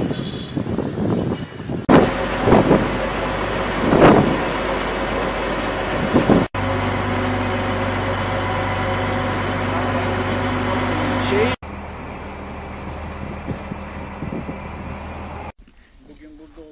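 Wind buffeting the microphone with bursts of voices, then, in a cut about six seconds in, a boat engine running steadily with an even, low hum, ending abruptly at the next cut, after which the level drops to a lower steady rumble.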